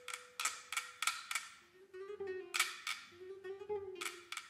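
Nylon-string classical guitar played in short, sharply plucked notes, several a second. From about halfway a lower, wavering sustained tone joins in and comes and goes.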